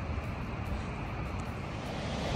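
Steady outdoor rushing noise, with wind rumbling unevenly on the microphone.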